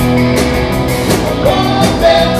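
Live rock band playing an instrumental passage without vocals: electric guitars over a drum kit's steady beat.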